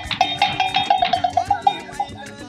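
Background music with a steady beat and a held, pulsing high note running through most of it.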